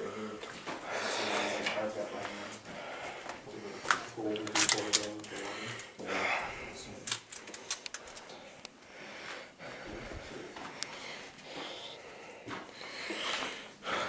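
Footsteps and scuffs on a dirt and debris floor, with scattered sharp clicks and crackles, most of them between about four and nine seconds in.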